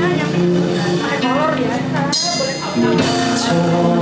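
A live acoustic band: strummed acoustic guitar chords with a male vocalist singing into a microphone, and a cymbal crash about halfway through.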